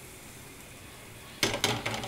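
Quiet kitchen background, then about one and a half seconds in a silicone pastry brush strikes a hot crêpe pan and sets off a sudden sizzle with quick scraping strokes as the butter is spread.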